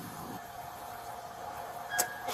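A faint steady electronic tone over background hiss, with a short beep near the end.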